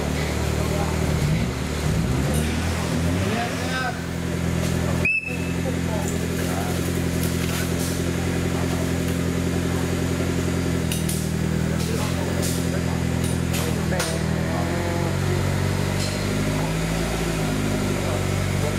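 Off-road competition 4x4's engine idling steadily, its note shifting slightly about eleven seconds in, with people talking in the background.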